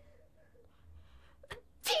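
A boy sneezes loudly near the end, one of a run of sneezes, with a short sharp catch of breath just before.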